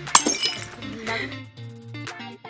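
A sudden glass-shattering crash just after the start, the loudest thing here, ringing out over about half a second over steady background music.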